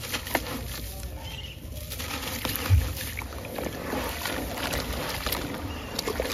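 Wet sand-cement lumps crushed by hand into water: gritty crunching and crackling with scattered clicks, a heavy thump nearly three seconds in, then a denser wet crackle and swishing as hands work the grey slurry.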